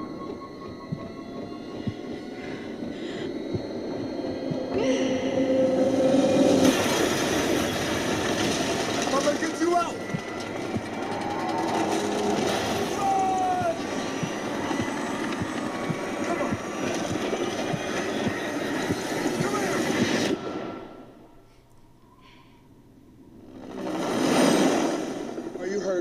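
Earthquake disaster-movie trailer soundtrack: dense crashing and rumbling of collapsing buildings with music and voices. It drops almost to silence about three-quarters of the way through, then swells into a short loud whoosh near the end.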